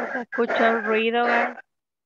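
Speech only: a person talking over a video call for about a second and a half.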